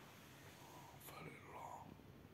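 Near silence: room tone, with a faint, whisper-like voice about a second in.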